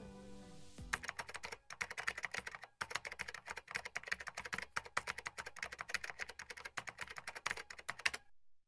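Typing sound effect: a rapid, uneven run of computer-keyboard key clicks starting about a second in, as the tail of a music piece fades out.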